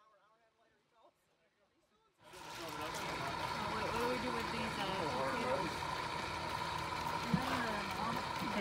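Very quiet for about two seconds, then a steady hum and hiss begins suddenly, with people talking over it.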